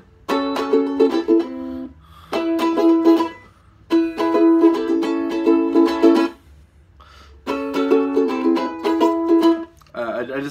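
Ukulele chords strummed in four short runs with brief pauses between, as different chords are tried out.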